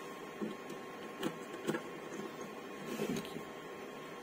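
Small screwdriver tightening a screw on a plastic panel-meter terminal block to clamp a wire, with a few faint clicks and scrapes.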